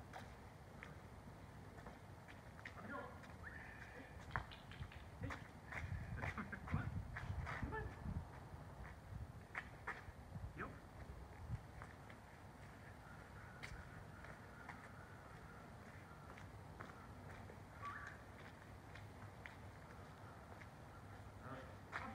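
Faint outdoor ambience with scattered light clicks and a low rumble that swells about six to eight seconds in.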